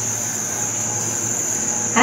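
Steady background noise: a low hum with a high, even hiss and no distinct events.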